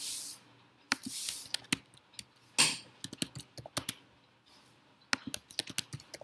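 Typing on a computer keyboard: irregular bursts of keystroke clicks with short pauses, broken by a few brief rushes of hiss.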